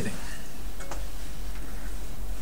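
Two faint clicks about a second in, over a steady low hum.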